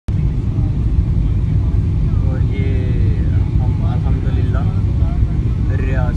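Steady low rumble of jet airliner cabin noise on the landing approach, with faint talking from about two seconds in.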